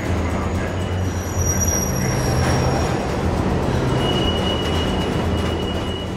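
Subway train rumbling along the platform with high, thin wheel squeals, one in the middle and a longer one near the end.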